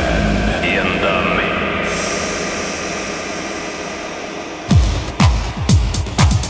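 Tail of a radio station drop: a rushing noise effect with gliding electronic tones that slowly fades down. About four and a half seconds in, an oldschool house track's kick drum starts, a deep thump about twice a second, each thump dropping in pitch.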